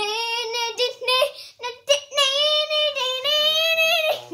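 A young boy singing, holding several long notes with short breaks between them.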